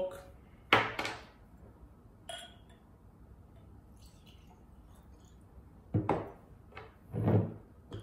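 Short knocks and glass clinks from handling a corked rum bottle and a tulip tasting glass: the stopper cork set down on the table, rum poured into the glass, and the bottle handled and recorked. There is a knock about a second in and a cluster of knocks and clinks near the end.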